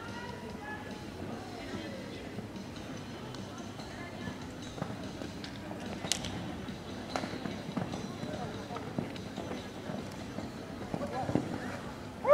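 Faint, indistinct voices of onlookers over a low, steady outdoor background, with a few sharp faint clicks about halfway through.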